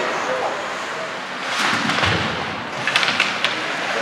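Ice hockey arena ambience: skates scraping on the ice under scattered crowd voices, with a quick run of sharp knocks about three seconds in.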